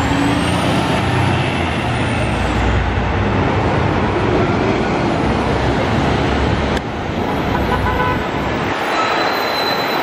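Articulated diesel city buses driving past close by, their engines running with a loud low rumble. A faint high whine rises and then falls in the first few seconds, and the rumble thins out near the end.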